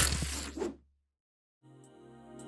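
Intro animation sound effect: a dense, noisy swish with clicks over a low rumble, dying away within the first second. Silence follows, then soft ambient music begins faintly near the end.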